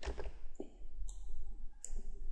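Keystrokes on a computer keyboard: a few separate clicks as MATLAB code is typed.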